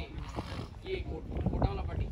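Indistinct chatter of a crowd of young men talking at once, with no single clear voice.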